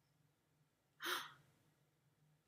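A woman's short, breathy gasp of surprise about a second in.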